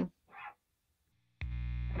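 Near silence, then about one and a half seconds in a click and a steady distorted buzz with hum from an electric guitar rig running through a breadboarded overdrive circuit, its diodes in the hard-clipping position.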